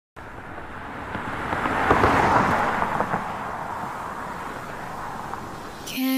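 Ambient noise with no music, swelling to a peak about two seconds in and easing off again, with a few faint knocks.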